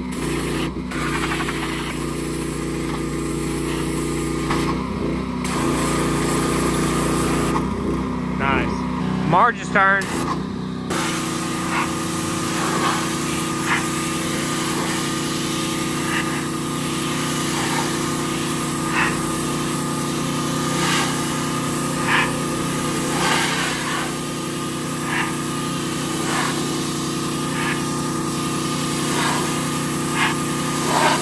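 A small engine running steadily, with its low end dropping away about eleven seconds in.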